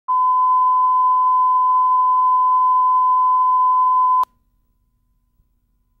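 Steady line-up test tone, the reference tone that runs with colour bars at the head of a videotape, holding one pitch for about four seconds and cutting off suddenly, then near silence.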